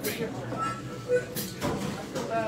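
Indistinct talk from the band and bar crowd between songs, with a short sharp click a little past halfway.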